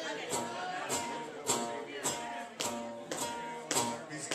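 Live band music: chords held under sharp percussive hits on a steady beat, a little under two a second.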